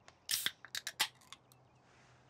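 A quick run of short, sharp clicks and snips, about half a dozen within a little over a second, over faint room tone.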